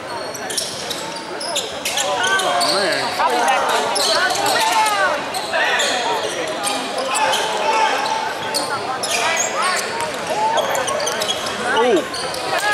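Basketball game on a hardwood gym floor: the ball bouncing, short sneaker squeaks, and players' and spectators' voices echoing in the hall, louder from about two seconds in.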